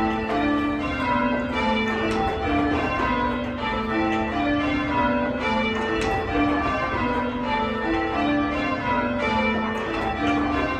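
Church tower bells rung full-circle by a band on ropes, heard from the ringing chamber below. The bells strike one after another without a break, the notes stepping down from high to low and repeating.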